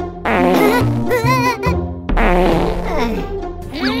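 Bass-heavy dance music overlaid with a cartoon fart sound effect.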